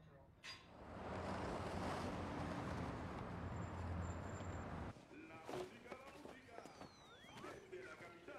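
Street traffic: a vehicle's engine rumble and road noise swelling over a few seconds, then cutting off abruptly about five seconds in, leaving only quieter scattered small sounds.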